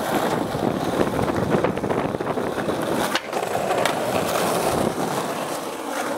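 Skateboard rolling on concrete: a steady wheel rumble with many small ticks, dipping briefly about three seconds in.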